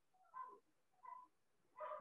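Near silence broken by two faint, short high-pitched cries from a pet, like a whimper, about two-thirds of a second apart.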